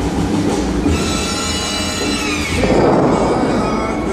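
Sustained music tones play throughout; about two and a half seconds in, a loud rushing burst, the fountain's water jets shooting up, rises over them for about a second.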